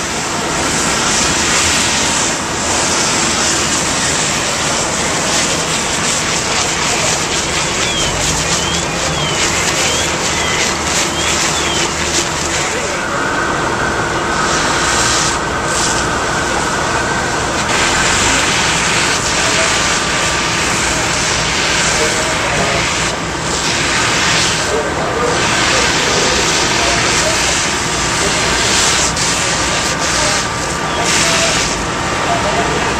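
Steady, loud noise of fire apparatus working a large building fire. Diesel engines run the pumps and water streams from aerial ladders pour onto the burning buildings, with voices in the background.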